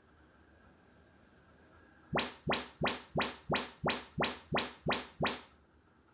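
Audyssey MultEQ XT32 calibration test signal from a Denon AVR-X3200W receiver, played through a loudspeaker: nine quick rising sweeps, about three a second, starting about two seconds in. The room is being measured for automatic speaker level, distance and EQ correction.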